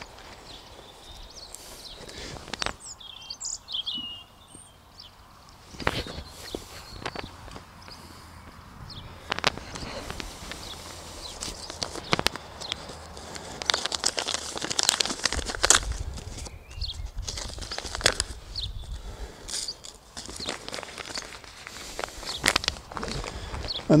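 Footsteps on soil and grass with light rustling of a seed packet as parsnip seeds are sown by hand along a drill; a bird chirps about three seconds in.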